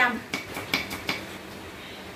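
Kitchen knife chopping green onions on a thick round wooden cutting board: a quick run of about five chops in the first second or so, then the chopping stops.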